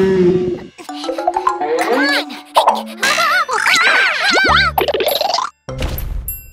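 Children's cartoon soundtrack: a music cue ends within the first second, then comes a run of playful cartoon sound effects with sliding, wobbling pitches and wordless character voices.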